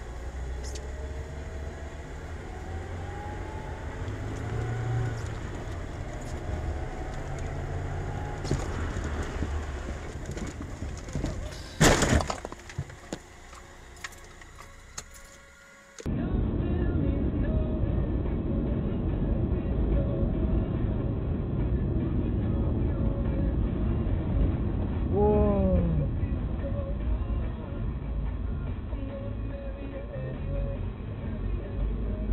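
Car collision picked up by a dashcam microphone: engine and road noise, then one sharp, loud crash about twelve seconds in, followed by a few smaller clatters. After a cut, steady road noise returns, with music.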